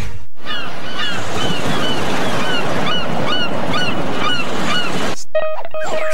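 A production-logo soundtrack of ocean surf with short, falling high-pitched bird-like cries repeating about twice a second. About five seconds in it cuts off, and a steady pitched tone begins.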